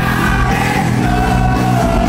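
Live rock music: a full band playing loudly, with voices holding a long sung note that slides slightly down near the end.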